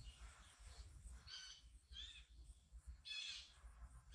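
Near silence: room tone, with a few faint, short high-pitched sounds.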